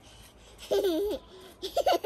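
A toddler laughing: a high-pitched squeal of laughter about two-thirds of a second in, then a few short giggles near the end.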